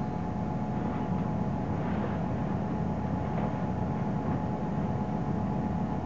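A steady machine hum with a few held tones, under faint rustling of a heavy canvas simulated spacesuit as it is stepped into and pulled up.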